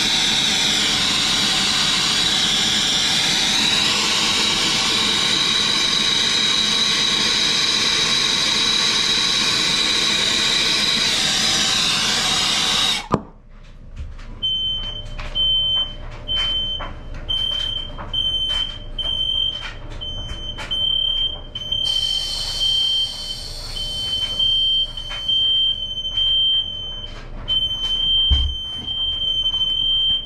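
Brazing torch burning with a steady, loud hiss and a high whistle, shut off suddenly about 13 seconds in. About a second later a smoke alarm starts sounding: a high beep chopped into rapid pulses.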